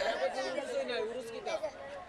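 Low chatter of voices in the background, quieter than the amplified speech around it.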